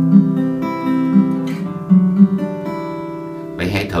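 Acoustic guitar playing chord shapes up the neck around the fifth fret against ringing open strings, the notes picked one after another and left to ring over each other. A man's voice starts near the end.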